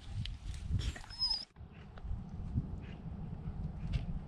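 Shar-pei dog giving a short high whine about a second in, among a few light clicks. Then a sudden break, followed by a steady low rumble.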